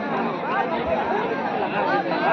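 Chatter of many people talking at once, several voices overlapping at a steady level.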